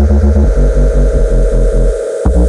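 A jungle/hardcore DJ mix playing loud: a heavy, pulsing bass line under a held synth tone, with the drums and high end dropped out. Right at the end the bass cuts out for a moment.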